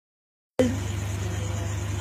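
Silence for about half a second, then a steady low hum under a faint even hiss.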